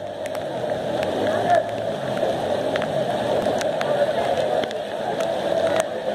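Rain and running floodwater: a steady rushing noise with scattered sharp ticks.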